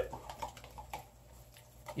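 Faint clicks and scraping of a tint brush stirring hair dye in a plastic container, dying away about a second in.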